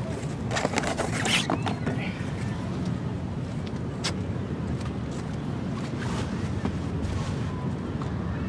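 Wind rumbling on the microphone, with a few short knocks and rustles of sail canvas and rope as reef points are untied from a mainsail. The knocks cluster in the first two seconds, and there is one more about four seconds in.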